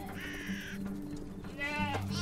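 Two animal calls over a low, held music drone: a short, harsh, rasping call about a quarter of a second in, then a higher, wavering bleat near the end.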